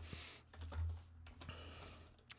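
Typing on a computer keyboard: a few faint, scattered keystrokes.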